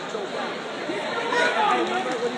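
Chatter of many people talking at once in a gymnasium, with no single clear voice standing out.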